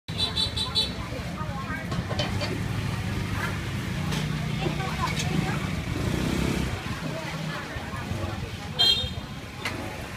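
Street traffic ambience: a vehicle engine running steadily close by until about seven and a half seconds in, with voices in the background. Short high-pitched beeping toots at the start and again, louder, about nine seconds in.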